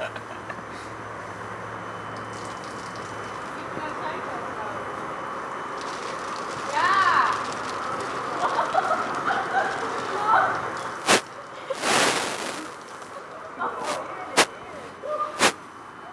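Beer poured from a rooftop splashing down onto a person wrapped in a plastic bin bag, as a steady noisy wash with short vocal sounds in the middle and a few sharp clicks or bursts near the end.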